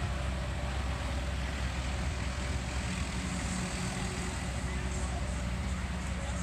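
JCB mini excavator's diesel engine running steadily while it swings its arm-mounted ride seats around.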